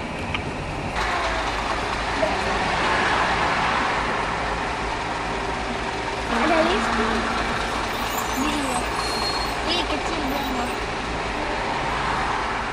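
Steady rumble of engines and road traffic in slow, congested traffic, heard from inside a car, with faint voices from about six seconds in.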